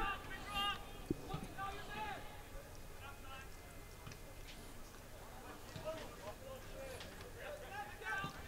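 Distant voices shouting and calling out at intervals, with a few faint thumps near the start.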